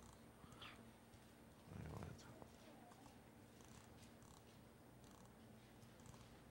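Near silence: room tone with a faint steady low hum and a brief soft low sound about two seconds in.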